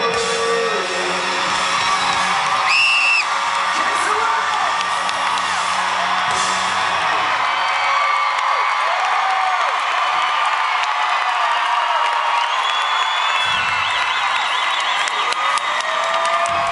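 Live rock band's closing chord ringing out and fading as a concert crowd cheers, whoops and whistles, with a loud whistle about three seconds in.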